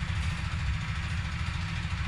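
Steady low rumble of a city bus's engine heard from inside the passenger cabin, even and unchanging throughout.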